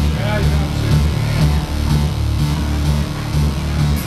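Live rock band playing, a strong repeating bass line under electric guitar, with people talking over the music.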